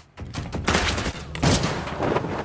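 Rapid gunfire, a dense run of shots from a film soundtrack. It starts about a third of a second in, after a brief lull.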